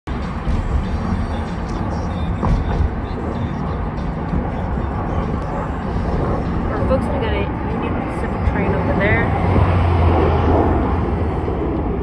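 Steady road noise inside a moving car's cabin: a low rumble of tyres and engine, with faint voices in the second half.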